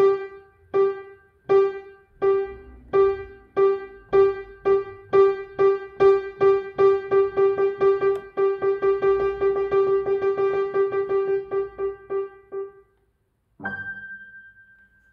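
Upright piano with a single key struck over and over by a bouncing hand. It starts at a little more than one note a second and speeds up to about four a second, then stops about a second before the end. A single higher note starts just at the end.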